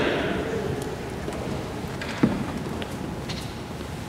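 Audience applauding lightly in a large hall, the clapping thinning and fading away, with a single sharp knock about two seconds in.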